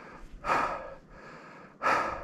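A man breathing hard while walking: two loud, breathy breaths about a second and a half apart.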